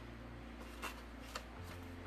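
Faint scraping of a wooden spoon against a foil bowl as wet plaster of Paris is scraped out, with two light clicks about a second in.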